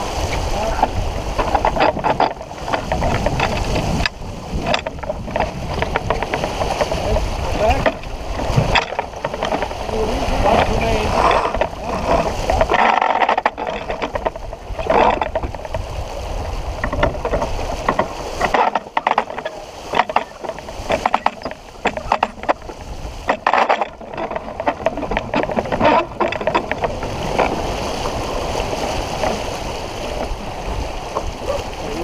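Wind buffeting the microphone of a camera on a moving sailboat, gusty and uneven with a few brief lulls. Water rushes along the hull, and indistinct crew voices and scattered knocks and clicks come from the deck.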